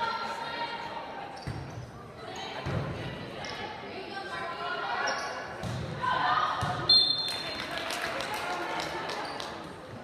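Volleyball being struck several times during a rally in an echoing gymnasium, under spectators' voices. A referee's whistle blows briefly just before seven seconds in, the loudest sound, ending the rally.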